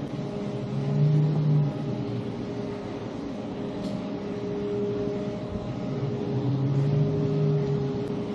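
A steady machine hum made of several held tones, which swells into a louder low drone twice, about a second in and again near the end. A brief faint high sound comes about halfway through.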